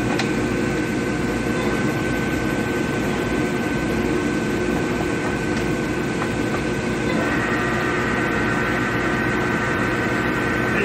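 Cincinnati Bickford radial arm drill running: a steady motor and gear hum with a high whine. About seven seconds in, a second, higher whine joins as the machine's controls are worked.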